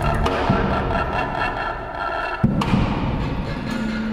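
Improvised ensemble music: held bowed-string tones and low bass notes under knocking strikes on a prepared grand piano's strings with wooden sticks, with one sharp knock about two and a half seconds in.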